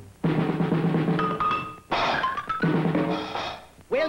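A loud cartoon band racket of drums and percussion, coming in three bursts with short breaks between them.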